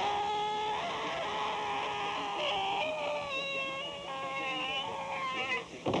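A man's long, drawn-out scream as he falls from a height: one held, wavering yell lasting about five seconds and fading slightly, ended near the end by a short, sudden sound as he lands.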